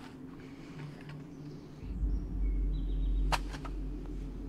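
Horror film soundtrack: a deep low rumble starts about two seconds in and holds, with a sharp click near the end and a few short high tones.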